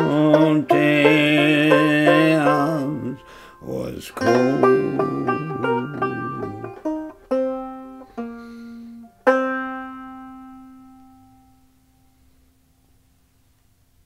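Open-back banjo and a man's voice ending a folk song: the last sung note is held for about three seconds over the banjo, then the banjo picks a short closing phrase. Its final few notes are spaced about a second apart, and the last one rings and fades away over some three seconds.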